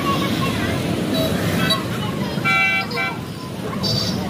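Busy street noise with voices, and a vehicle horn sounding one short steady toot for about half a second past the middle.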